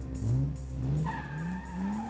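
Car sound effect: an engine revving up through the gears in short rising sweeps, each higher than the last, with a steady tire squeal setting in about halfway through.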